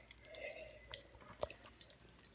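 Faint sips and swallows of Sprite mixed with Pop Rocks, drunk from a plastic cup, with a few sharp little clicks from the popping candy.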